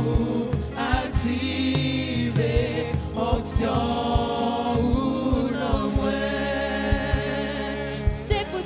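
Gospel song sung in church: a woman leads into a microphone while the congregation sings along in chorus, over a steady beat.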